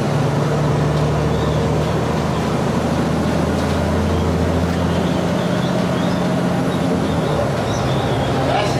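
Cabin noise inside a moving trolley-style bus: a steady low engine drone over road noise.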